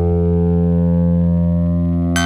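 Synton Fenix 2 analog modular synthesizer holding one low, steady note with a dull, muted top end.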